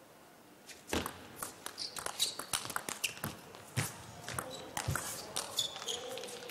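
Table tennis rally: starting about a second in, the ball clicks rapidly back and forth off the bats and table. Players' shoes squeak briefly on the court floor and their feet thud.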